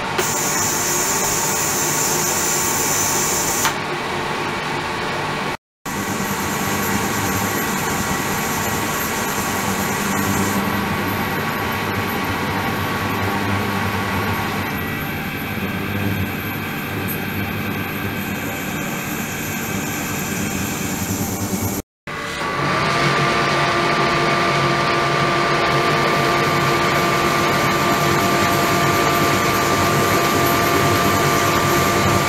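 Ultrasonic cleaning tank running with water circulating through it: a steady hissing machine noise with a few steady whining tones over it. It drops out briefly twice, about six seconds in and again about twenty-two seconds in, and the set of tones changes after each break.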